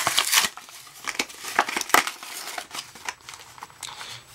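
A cardboard-backed plastic blister pack of Pokémon trading cards being torn open by hand: crinkling and ripping of card and plastic in a quick run of irregular crackles, loudest in the first half second, then scattered rustles.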